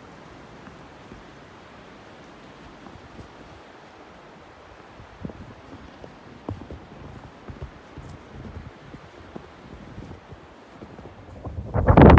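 Steady outdoor hiss of wind on the microphone, with irregular soft thuds of footsteps on snow from about halfway through. Near the end a loud rush of wind hits the microphone.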